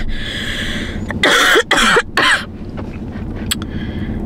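A woman coughing. A breathy, rasping start is followed about a second in by two or three coughs in quick succession.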